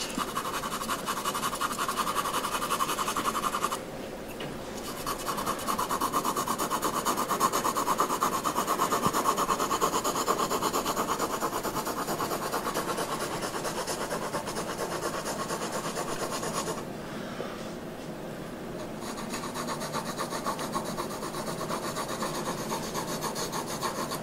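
A pencil shading on drawing paper, heard up close: a fast, continuous run of scratchy back-and-forth strokes that eases off briefly about four seconds in and again for a couple of seconds around seventeen seconds.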